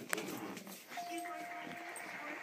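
Bulldog giving one steady high whine that starts about halfway through and holds for about a second, with a sharp click just after the start, over background speech.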